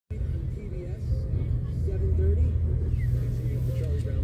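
Low, steady rumble of slow-moving car traffic, with a faint voice over it.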